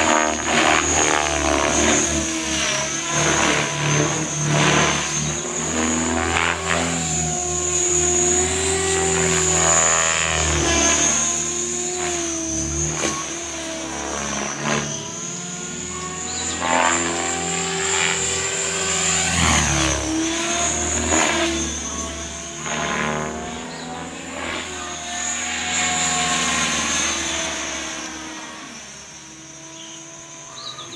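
Align T-Rex 550 electric RC helicopter in flight: motor whine and rotor-blade noise rising and falling in pitch with its manoeuvres, fading as it climbs away near the end.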